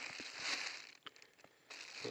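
Thin plastic bag crinkling as pieces of honeycomb are put into it and the bag is handled, quieter for a moment about a second in.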